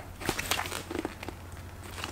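Light crackling and clicking of shrink-wrapped vinyl records and their cardboard mailer box being handled, a cluster of small clicks in the first second and a half.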